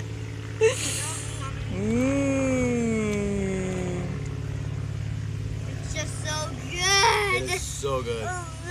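A person's long drawn-out vocal sound, rising and then slowly falling in pitch over about two seconds, followed near the end by short vocal sounds and laughter. A steady low hum runs underneath.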